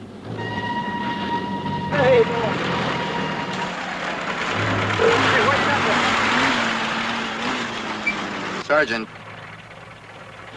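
A motor vehicle's engine running and growing louder toward the middle, with a few brief voices over it. A held high tone sounds in the first two seconds or so.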